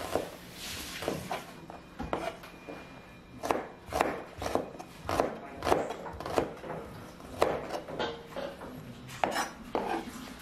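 Kitchen knife slicing garlic cloves on a wooden cutting board: irregular knocks of the blade striking the board, about one or two a second.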